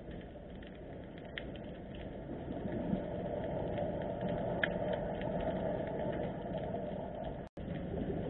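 Underwater sound of harbour seawater: a steady low rumble of water noise with scattered sharp clicks and crackles. The sound cuts out for an instant near the end.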